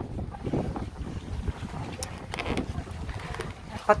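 Wind buffeting the microphone: an uneven low rumble that rises and falls throughout, with a few faint clicks.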